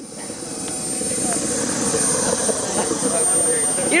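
Model jet turbine in an RC BAE Hawk running on its first test run: a steady rushing noise with a thin high whine over it, loud enough to need earplugs. It grows louder over the first couple of seconds, then holds steady.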